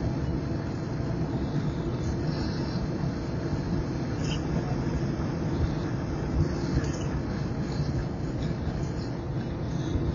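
Steady road and engine noise inside a car's cabin, driving at highway speed.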